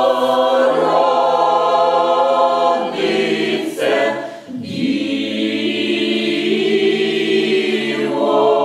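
A mixed choir of women's and men's voices singing a cappella in sustained chords, with a short break between phrases about halfway through before the voices come back in.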